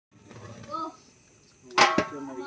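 Men's voices talking quietly, then a short loud sound just before the end.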